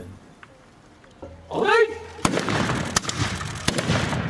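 A long shouted command, then three sharp reports from Japanese matchlock muskets (tanegashima) fired in a ragged sequence about two-thirds of a second apart, the first shot the loudest.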